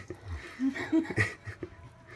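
Quiet chuckling: a couple of short laughs in a person's voice, softer than the talk around them.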